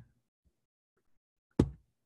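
A single sharp tap about one and a half seconds in, from someone pressing at the computer to advance a slide that is stuck.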